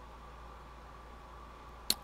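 Faint steady room tone between narration: a low hum with a thin steady whine. A short sharp intake of breath comes just before the end.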